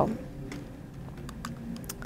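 A few faint, sharp clicks spread across about two seconds over a low, steady room hum.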